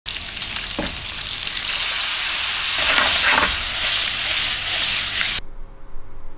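Sliced pork belly and daikon sizzling in a hot frying pan, a steady loud sizzle that cuts off suddenly about five and a half seconds in.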